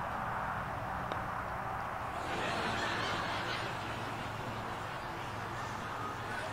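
Steady outdoor background noise on an open green, with one faint tap about a second in: a putter striking a golf ball.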